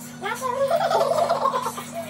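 A woman laughing in a quick run of bursts lasting about a second and a half.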